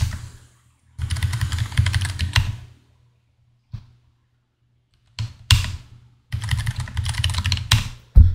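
Typing on a computer keyboard in two quick runs of keystrokes, with a lone keystroke in the pause between them.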